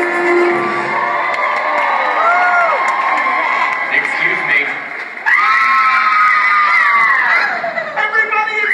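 Theatre audience cheering and shouting, many high-pitched voices overlapping, with a sudden loud fresh surge of long shrieks about five seconds in that slide down in pitch toward the end.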